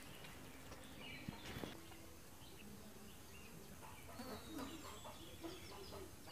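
Faint farmyard background: hens clucking and small birds chirping, with a couple of light knocks about a second and a half in.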